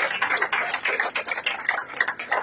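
Audience applauding, a dense patter of many hands clapping that thins toward the end.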